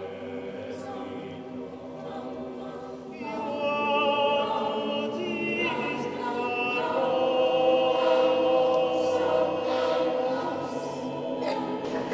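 Voices singing a slow Christmas choral piece, holding long notes with vibrato; the singing swells louder about three seconds in.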